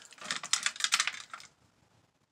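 Rapid run of light clicks and clatters of lip pencils being handled and set down, stopping about a second and a half in.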